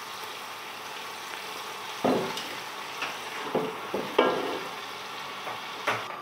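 Chopped onions sizzling as they fry in fat in a large aluminium stockpot, a steady hiss broken by a few short scrapes of the spatula against the pot.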